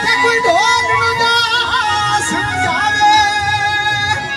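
Punjabi folk song (mahiye): a singing voice with wavering, ornamented pitch glides over steady held instrumental tones and a low drum beat.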